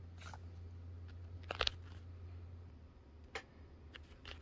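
Quiet handling noise as fingers hold a vinyl tab and metal lobster clasp in an embroidery hoop: a few faint clicks and rustles, with one louder crinkly click about a second and a half in, over a low steady hum that drops away a little before three seconds.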